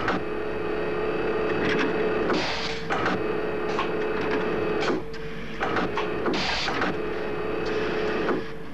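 Factory machinery: industrial robot arms working, a steady mechanical whirr with repeated short clunks and clicks. The whirr breaks off and restarts every couple of seconds, with brief bursts of hiss.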